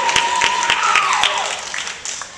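Audience applauding, with many sharp claps and a long held cheer that slides down in pitch about a second and a half in. The applause dies away near the end.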